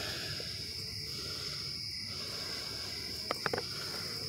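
Crickets trilling steadily in the background, with a few light clicks near the end as the plastic mating nuc is handled.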